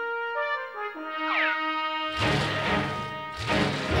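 A short brass music cue with a falling slide. From about halfway, a loud rushing noise as the cartoon school bus's wheels spin in place: not enough friction under them to get the bus moving.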